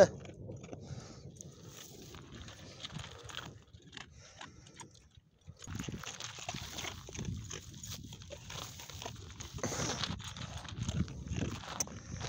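Faint, irregular close animal sounds with soft rustling. The sound dips almost to silence about four seconds in, then grows busier over the second half.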